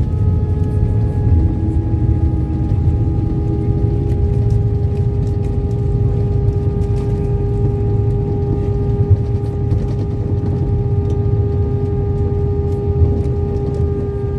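Airbus A319 cabin noise on the landing rollout, decelerating after touchdown: a heavy, steady rumble from the wheels on the runway under several steady whining engine tones that sink slowly in pitch as the engines wind down. There are two brief jolts, about nine and thirteen seconds in.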